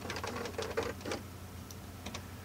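Motorized faders of a Digidesign ProControl control surface moving to new positions in a quick series of short mechanical strokes over about the first second, with a steady low hum underneath.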